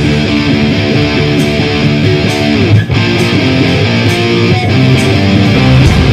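Live heavy rock: an electric guitar riff carries the music with the deepest bass dropped out, with sharp drum or cymbal strokes about once a second and a brief break near the middle.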